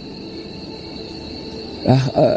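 A steady high-pitched trill running under the room, with a faint low drone beneath it.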